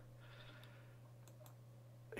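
Near silence: a steady low hum of room tone with a few faint computer mouse clicks, mostly around a second in.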